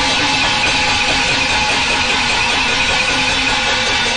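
Cantonese opera ensemble playing a dense, busy instrumental passage under a steady sustained pitched line, ahead of the singer's entrance.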